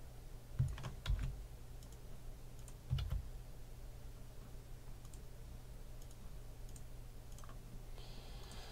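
A few faint clicks at a computer, about half a second, a second and three seconds in, as a randomized list is copied and pasted into a spreadsheet, over a steady low hum.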